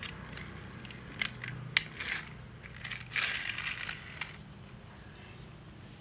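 Plastic toy garbage truck being handled and pushed across rough concrete: a few sharp plastic clicks, then gritty scraping as its wheels roll over the grit.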